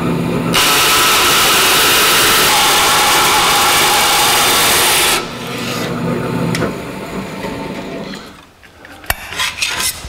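Bandsaw cutting through 18-gauge sheet metal: a loud, steady rasping hiss of the blade in the metal for about four and a half seconds. The saw then runs on unloaded and its hum dies away, with a sharp click near the end.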